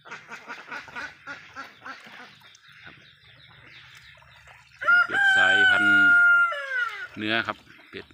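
A rooster crows about five seconds in: one long, held call that falls away at the end, the loudest sound here. Before it, poultry give a run of short, quick clucks.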